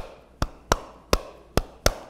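Body percussion: six sharp hand claps in an uneven, syncopated rhythm.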